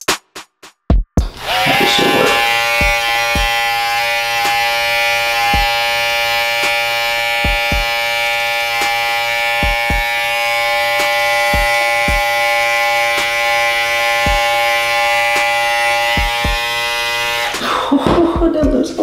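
Electric T-blade hair trimmer buzzing steadily as it cuts along the hairline. It switches on about a second in and off just before the end. Background music with a drum beat plays over it.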